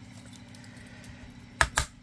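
Handheld hole punch closing through thick cardboard, two sharp clacks in quick succession near the end as the punch cuts through.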